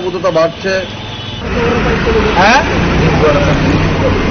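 A steady vehicle engine rumble from inside a van, starting suddenly about a second and a half in, under men's voices. A short rising tone cuts through about two and a half seconds in.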